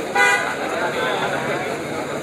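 A vehicle horn gives one short toot, about a third of a second long, over a crowd's chatter.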